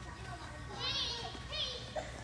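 Young children calling out in high voices during play, one call about a second in and a shorter one about half a second later.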